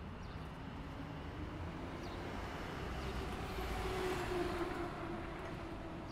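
Ambient intro of a music video's soundtrack: a quiet, low rumbling haze with a faint held hum that swells in the middle and eases off again, before any singing or beat comes in.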